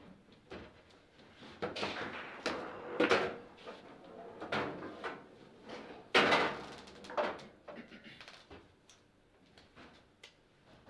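Foosball table clattering: a series of sharp knocks and rattles as the rods are moved and the figures and ball strike the table, the loudest about six seconds in.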